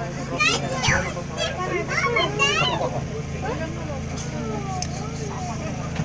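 High-pitched children's voices and chatter inside a safari bus, over the steady low hum of its engine.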